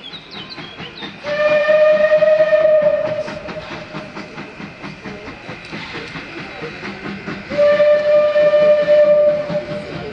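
Steam locomotive whistle blown in two long steady blasts, each a little under two seconds, about six seconds apart, as the engine approaches with a passenger train. The train's running noise carries on between the blasts.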